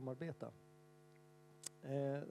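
A steady electrical hum of several held tones, heard alone in a short gap between speech. Speech trails off at the start and resumes near the end, just after a small click.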